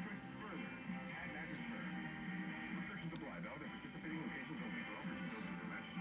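Speech and music played faintly through the speaker of an Icom IC-7300 ham transceiver. The radio is demodulating an AM signal that a signal generator has modulated with an external audio source.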